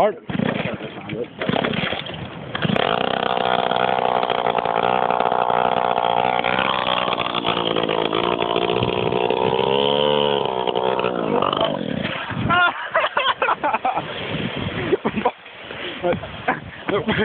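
Small petrol engine of a motorised scooter catching about three seconds in after a failed start, then running steadily. It revs up and back down once around ten seconds in and dies away about twelve seconds in.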